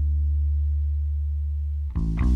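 A single low bass note held and slowly fading, with a pure, almost sine-like tone, breaking off near the end as new notes start.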